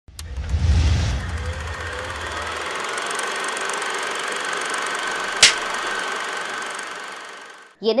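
Video intro sound effects: a low boom in the first second, then a sustained rushing swell with a high steady tone, a single sharp hit about five and a half seconds in, then a fade-out.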